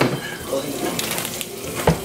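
A steady hiss of kitchen noise while cooking, and near the end a single loud thump as something the baby was holding drops onto the wooden floor.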